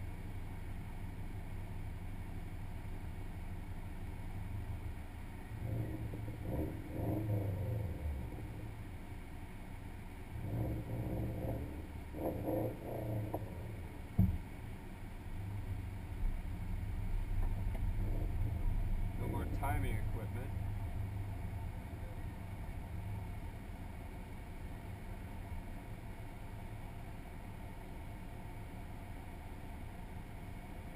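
A normally aspirated Subaru's engine idling, heard from inside the cabin as a steady low rumble. It grows heavier for several seconds past the middle as the car moves up in the queue. Muffled voices come and go, and there is one sharp click near the middle.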